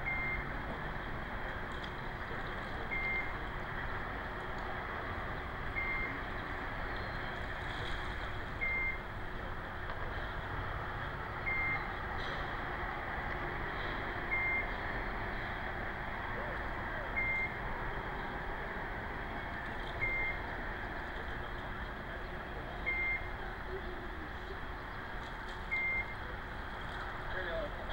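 A short high electronic beep repeating evenly about every three seconds, over a steady background hiss of outdoor harbor ambience.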